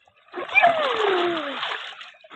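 Water splashing in a kids' paddling pool, starting about a third of a second in and lasting about a second and a half. Over it, a child's voice slides steadily down in pitch.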